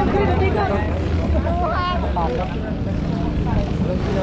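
Go-kart engines running on the circuit, heard as a steady low drone, with faint voices over it.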